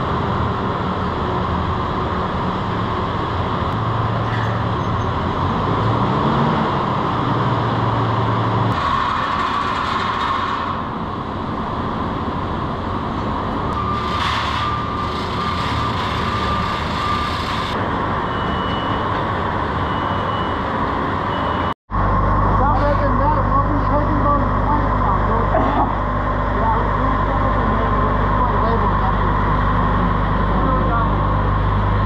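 Loud, steady industrial machinery drone with a constant hum, cutting off suddenly about two-thirds through and giving way to a different steady, lower hum.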